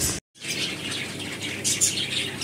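Caged pet budgerigars chirping, with a couple of clearer high chirps near the end. There is a brief break in the sound just after the start.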